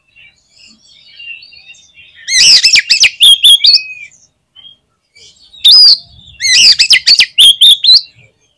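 Oriental magpie-robin (kacer) singing: soft scattered chirps, then two loud bursts of rapid, sweeping whistled phrases, the first about two seconds in and the second from near the middle to the end. It is in full, vigorous song, what kacer keepers call gacor.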